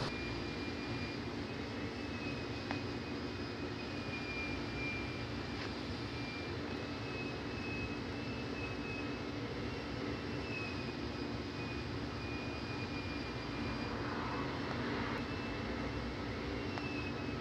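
A steady mechanical drone with a low hum and a thin, slightly wavering high whine above it, unchanging throughout.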